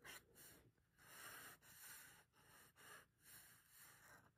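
Near silence: a felt-tip marker drawing faint, short strokes on paper card, heard as a few soft swishes.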